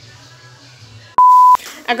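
A short, loud electronic beep: a single pure tone of about a third of a second that starts and stops abruptly with a click, a little past one second in.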